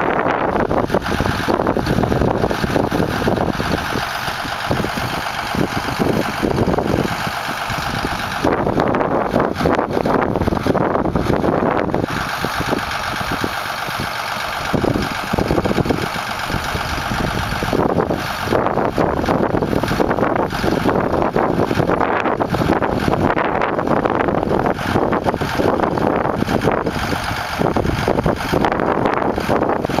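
Case 2090 tractor's diesel engine running steadily under load while pulling a field cultivator through the soil, with wind buffeting the microphone.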